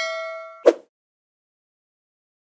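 A notification-bell 'ding' sound effect ringing and fading away, cut off about two-thirds of a second in by a short click.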